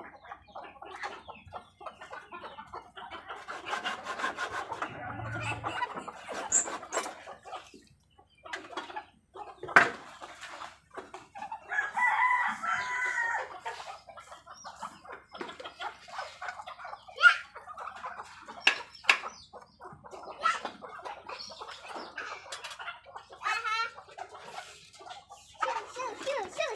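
Domestic chickens clucking, with a rooster crowing once about twelve seconds in. Scattered sharp clicks run through it.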